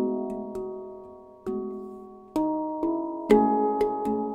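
Handpan played by hand: a slow melody of single struck notes, each ringing out with a clear pitched tone and fading slowly, with the loudest strike a little after three seconds in.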